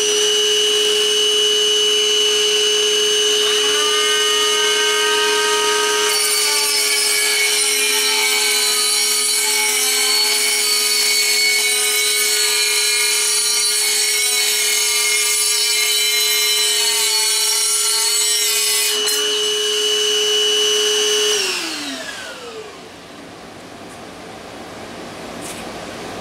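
Milwaukee 2522-20 M12 3-inch cordless cutoff saw whining at full speed, then grinding into ceramic tile from about 6 s to 19 s with a gritty hiss over the whine. About 21 s in it is switched off and winds down, its whine falling in pitch.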